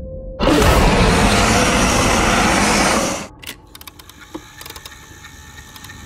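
A sudden loud burst of noise that holds for about three seconds and then cuts off, followed by a quieter stretch of rapid crackling clicks.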